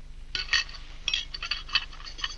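A knife and fork clinking and scraping lightly against a china breakfast plate, about six short bright clinks spread over a second and a half.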